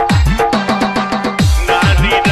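Electronic DJ dance remix with a heavy kick drum that drops in pitch on each beat, about four beats a second. About half a second in, a quick fill of rapid falling bass hits plays over a held bass note, and the kick beat comes back near the end.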